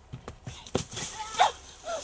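Running footsteps thudding over rocky, dry ground while someone pushes through undergrowth: several footfalls in the first second and a half, the loudest about halfway through, with a rustle of brush. Short rising-and-falling calls sound in the background.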